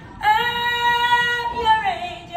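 A woman singing solo, holding one long, steady note that slides down in pitch just before the end.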